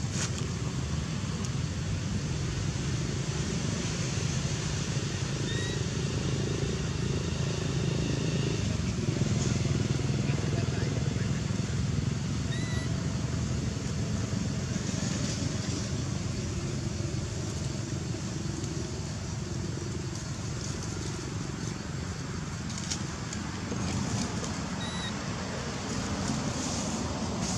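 Steady low rumble of distant motor traffic, with three brief high chirps spread through it.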